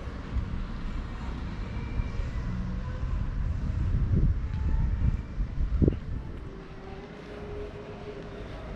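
Low rumble of a motor vehicle passing on the street, swelling about four to six seconds in and then fading.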